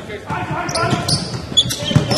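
A basketball being dribbled on a hardwood court, with the sharpest bounce near the end, over the murmur of voices in the arena.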